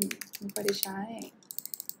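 Typing on a computer keyboard: scattered key clicks, then a quick run of keystrokes in the second half.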